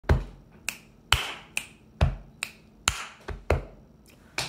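Body percussion in a steady rhythm, about two strokes a second: louder hand pats on the chest alternate with lighter finger snaps.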